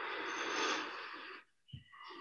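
A person's long audible breath, an even airy hiss lasting about a second and a half, followed by a brief low thump.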